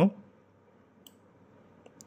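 Two faint, short clicks of a computer mouse, about a second in and near the end, over quiet room tone; a spoken word ends right at the start.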